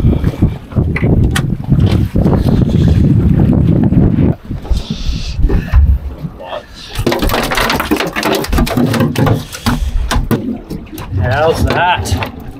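A pink snapper splashing at the boat's side, then flapping on an aluminium checker-plate deck in a run of quick knocks from about seven seconds in. Wind buffets the microphone over the first few seconds.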